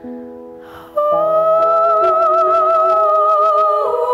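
A woman sings a long held note with vibrato over sustained instrumental chords. A breath is heard just before the note. She glides down to a lower note near the end.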